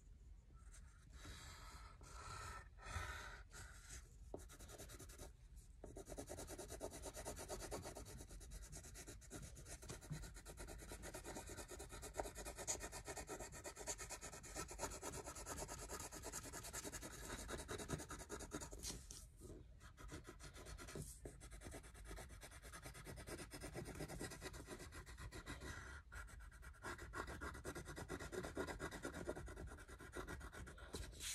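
Crayon scribbling rapidly back and forth on paper, colouring in a large area, with a couple of brief pauses in the strokes late on.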